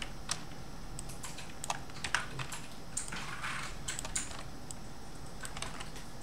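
Keys on a computer keyboard being struck in irregular, scattered clicks, with short pauses between them, as shortcuts are entered during photo editing.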